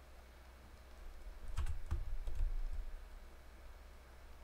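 Computer keyboard keys clicking: a short run of about five clicks with dull thumps, from about one and a half to nearly three seconds in.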